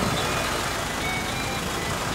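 Steady engine noise from a hydraulic rotary piling rig, with a few short high-pitched tones above it.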